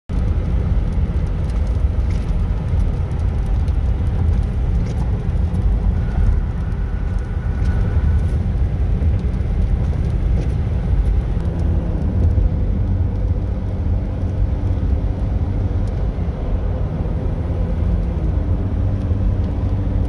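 Steady road and tyre rumble of a car driving at highway speed, heard from inside the cabin.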